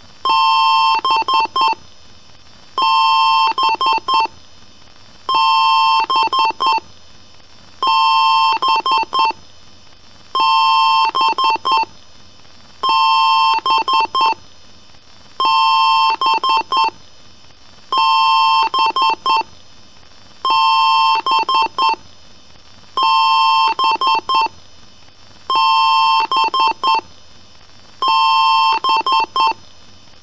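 Electronic beeping in a repeating pattern: a steady two-tone beep about a second long followed by a quick run of three or four short beeps, the whole pattern coming round about every two and a half seconds.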